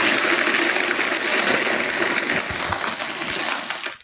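Vitamix blender running at low speed, crushing ice into a milkshake-thick drink. It starts at once and cuts off suddenly just before the end.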